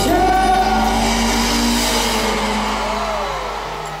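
A live rock band's closing chord ringing out and fading at the end of a ballad, with an arena crowd cheering and screaming over it.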